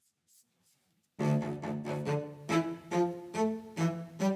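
Staccato string loop playing back in Logic Pro: short, detached string notes in a repeating pattern at normal speed, with no slow-down applied yet. It starts suddenly about a second in, after near silence.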